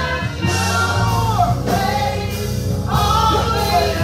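Gospel singing led by a woman on a handheld microphone, joined by backing singers, over a steady instrumental accompaniment with held bass notes.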